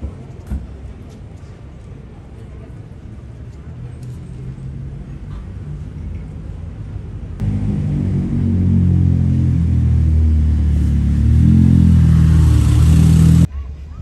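Low traffic rumble. About seven seconds in, a loud motor vehicle engine comes in abruptly, running with a deep drone that rises and shifts in pitch as it revs, then cuts off suddenly near the end.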